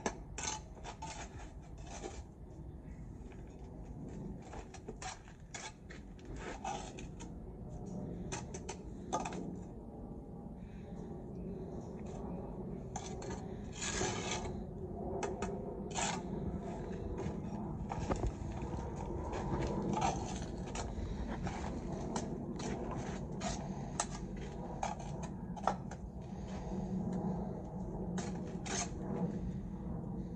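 Steel brick trowel scraping and spreading mortar and tapping clay bricks into the mortar bed, a scattered run of short scrapes and knocks.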